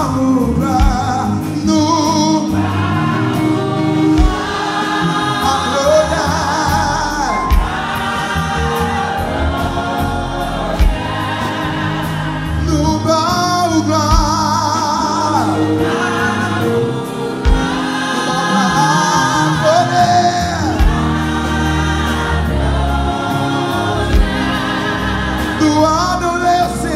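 Live gospel praise and worship music: many voices sing together over a band with drums and bass guitar.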